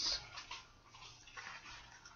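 Faint rustling and handling noise as a homemade championship belt is picked up and held up, with a few soft scuffs in the first half second.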